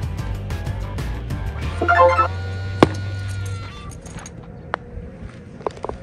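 Background music with a steady bass line cuts out a little over halfway through. A quieter stretch with a few sharp clicks follows.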